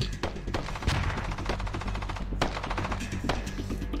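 Gunfire in a film soundtrack, a rapid run of shots with a few heavier reports among them, over a low steady musical drone.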